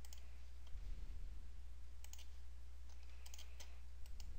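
Computer mouse clicks, a few at a time with a quick cluster near the end, over a steady low hum.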